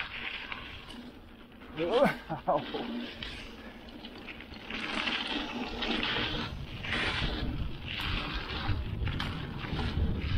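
Mountain bike running down a rough dirt trail: a steady rush of tyre and riding noise that grows louder and comes in surges in the second half. A short laugh from the rider about two seconds in.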